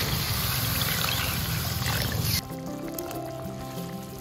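Water poured from a bowl into a wok of hot, oily chilli and shrimp-paste curry, a loud rushing pour with the spatula stirring. It cuts off suddenly a bit past halfway, and background music with plucked notes carries on.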